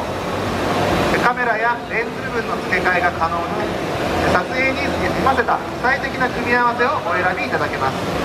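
A presenter talking, over a steady hum from several DJI quadcopters hovering: an Inspire 2, a Mavic Pro and a Phantom 4 Pro.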